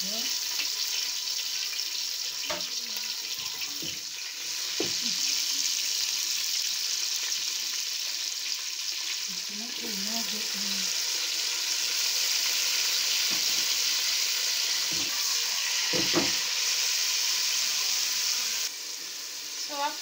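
Onions and tomatoes sizzling in hot oil in a pot: a steady frying hiss that grows louder about four seconds in and again about ten seconds in. A few short knocks of a utensil or bowl against the pot.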